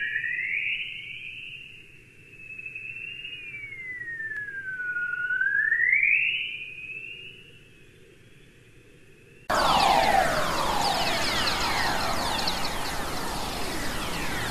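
Radio emissions from Earth's magnetosphere converted to sound. First comes plasma-wave chorus: a thin whistling tone that glides up, sweeps slowly down and rises again, then fades away. About nine and a half seconds in it switches abruptly to whistler waves, a loud hiss full of many quick falling whistles; whistlers are radio waves from lightning.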